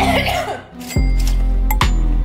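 Edited-in dramatic music sting. A short noisy burst opens it, then a sudden deep bass boom about a second in holds under steady tones. A second sharp hit comes just before the end.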